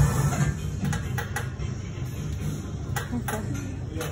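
Low background music with a few sharp clicks and clanks of gym equipment: a cluster about a second in and a pair about three seconds in.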